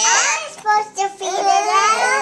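A young child's high-pitched, wordless vocalizing: long drawn-out vowel sounds that glide up and down in pitch, with brief breaks about half a second and a second in.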